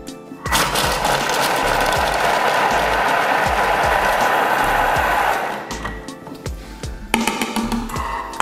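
Thermomix food processor chopping quartered onions and a red chili at speed 5: the blades run at high speed for about five seconds, starting about half a second in and then stopping abruptly.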